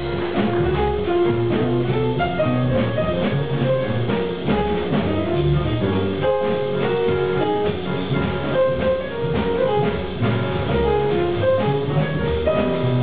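Live small-group jazz: acoustic piano playing over a plucked upright double bass, with a drum kit keeping time.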